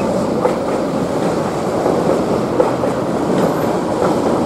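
Metro train running past the platform: a steady rumble of wheels on rails with occasional clacks as the wheels cross rail joints.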